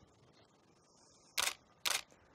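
DSLR camera shutter firing twice, about half a second apart, near the end: two short mechanical clicks of the mirror and shutter.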